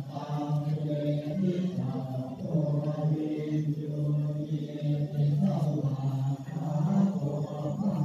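A group of voices chanting Buddhist verses in unison, a low recitation held on a nearly level pitch with brief steps up to a higher note.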